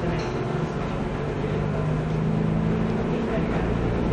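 A steady low hum over even background noise, with no distinct event.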